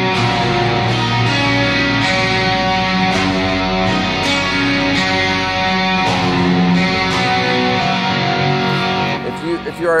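Electric guitar through a Fractal Audio Axe-Fx III patch that blends the guitar's magnetic pickups with its acoustic pickup and a couple of synth blocks, giving a dense, layered wall of sustained, ringing chords. The playing stops a little after nine seconds in, and a man starts speaking at the very end.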